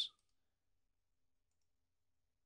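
Near silence, with one faint computer mouse click about one and a half seconds in.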